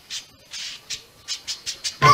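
A run of short hissing bursts that come faster and faster, leading straight into a song's backing music.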